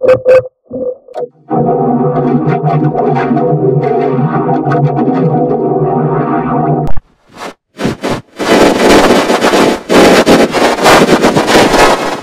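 Station logo jingle mangled by audio effects: choppy fragments, then a held synthesizer chord that cuts off about seven seconds in. After some stuttering cuts comes a loud, harsh, distorted noise near the end.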